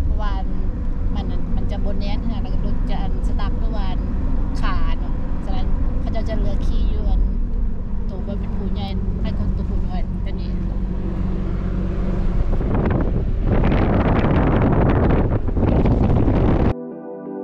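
Steady drone of a four-wheel-drive SUV's engine and tyres running over desert sand, heard from inside the cabin. About twelve seconds in, a louder rushing noise rises and holds.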